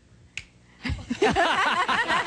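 A single sharp finger snap about a third of a second in, followed from about a second in by men's voices and laughter.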